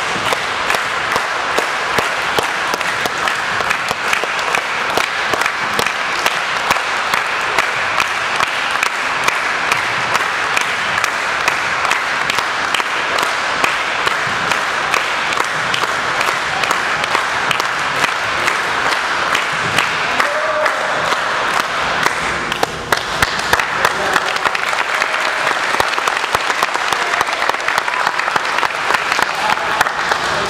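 An audience clapping in a long, steady round of applause, with a brief dip about two-thirds of the way through.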